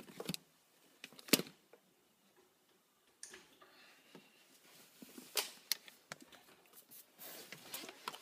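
Handling noise: a few scattered sharp clicks, the loudest about a second and a half in, and faint rustling as things are picked up and moved.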